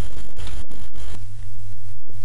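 Steady low hum under scratchy hiss and crackle; the hiss thins about a second in.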